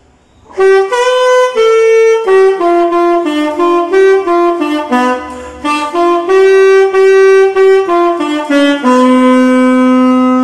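Alto saxophone played solo: a slow melody of separate notes, one at a time, starting about half a second in and ending on a long held low note near the end.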